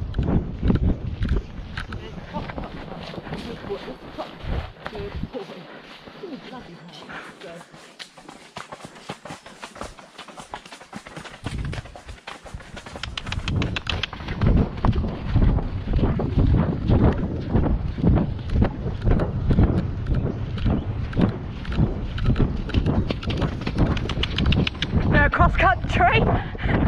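A horse's hoofbeats and tack noise while ridden over a soft, wet track, with wind rumbling on the microphone. It is quieter for a few seconds early on, then louder and busier from about halfway.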